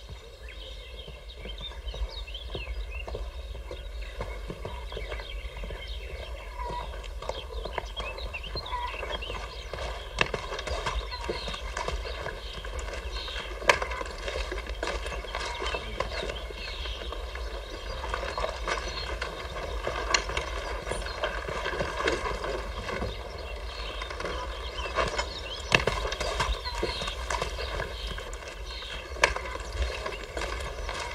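Many irregular clicks and knocks over a steady background, with a few louder knocks and scattered short high chirps.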